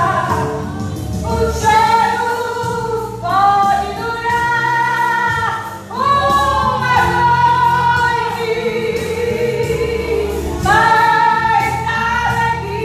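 A woman singing a gospel song into a microphone in long held phrases, with short breaths between them, over a steady low accompaniment.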